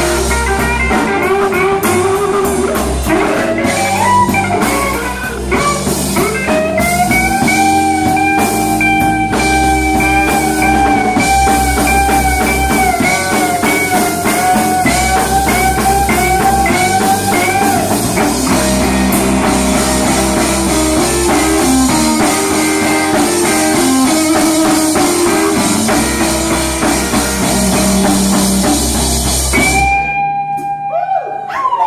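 Live electric blues band playing: lead electric guitar over bass guitar and drum kit, with one long held note that wavers slightly from about seven seconds in to about eighteen seconds in.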